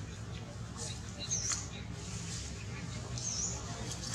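A short, high-pitched animal chirp, repeated at an even spacing of about two seconds: once about a second and a half in, and again near the end. Faint clicks and a steady low rumble run underneath.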